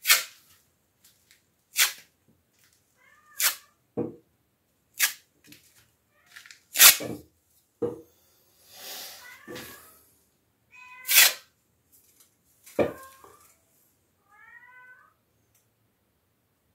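A cat meowing several times, with about seven sharp, short scraping strokes of a hand tool spreading joint compound on a wall; the strokes are the loudest sounds.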